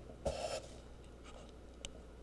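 Faint handling noise as the preserved specimen is shifted in a gloved hand: a short rustle about a quarter second in and a small click near the end, over a steady low electrical hum.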